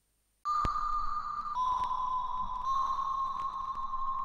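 Electronic background music starting suddenly about half a second in: a sustained high synth tone that steps down in pitch and then slightly up, with two faint mouse clicks.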